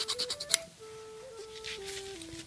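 Quick back-and-forth strokes of a hand file scraping the flashing off the edge of a freshly cast pewter spoon, stopping about half a second in with a sharp click. A soft tune of single held notes plays throughout.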